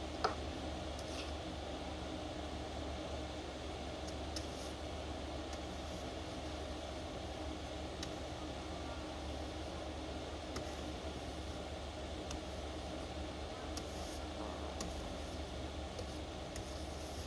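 Steady low hum of a car engine idling, with a few faint clicks.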